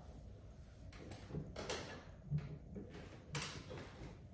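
A handful of faint clicks and soft knocks with a little rustling, from a person shifting on a padded piano bench and settling at an upright piano before playing.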